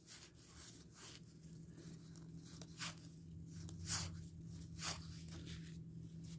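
Cardboard baseball cards being thumbed through and slid off a stack: soft scraping rustles, with a few sharper swishes about three, four and five seconds in. A faint steady low hum runs underneath.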